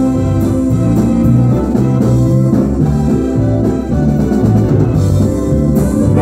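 Live band playing, with keyboard organ over a moving bass line, plus guitar and drums.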